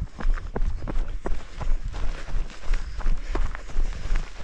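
Footsteps of shoes on an asphalt road at a steady pace, about two a second, over a low rumble of wind and movement on the body-carried camera's microphone.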